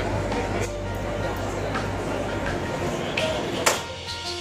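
Background music with a steady bass line, and near the end a single sharp whack of a bat striking a stainless steel mesh security screen.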